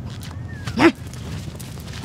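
A single short, sharp vocal yelp about a second in, loud and bark-like, over a steady background hiss.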